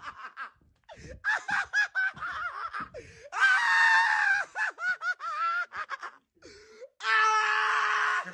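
A man laughing loudly in quick high-pitched pulses, broken by long shrieking laughs about three and a half seconds in and again near the end.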